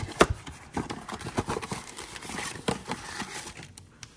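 Foil trading-card booster packs and small plastic-bagged dice handled by hand: crinkling and rustling with irregular small clicks and taps, one sharper click near the start.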